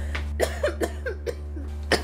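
A woman coughing in a fit, a run of short coughs one after another with a louder one near the end.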